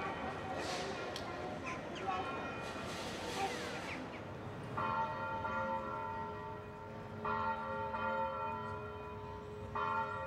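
Church bell tolling slowly, three strikes about two and a half seconds apart starting about halfway through, each ringing on. Before the bell there is a background of distant voices and street noise.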